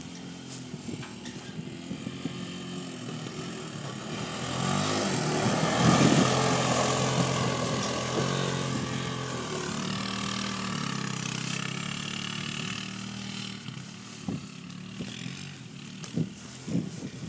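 Kawasaki Bayou 250 ATV's single-cylinder four-stroke engine running as the quad drives up and passes close by, its pitch rising and falling with the throttle. It is loudest about six seconds in and fades as the quad pulls away.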